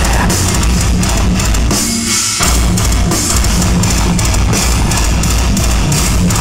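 Heavy metal band playing live on drum kit, bass drum and electric guitars, loud and dense throughout, with a brief dip in the guitars about two seconds in.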